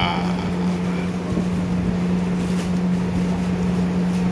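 A steady machine hum: a constant low drone over an even rushing noise.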